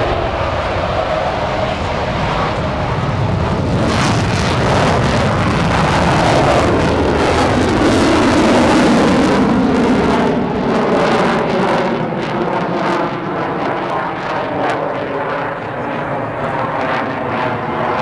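Loud jet noise of a Mitsubishi F-2 fighter's single F110 turbofan engine as the jet flies overhead. The pitch sweeps and shifts as it passes, the noise peaks about eight or nine seconds in, then eases off a little.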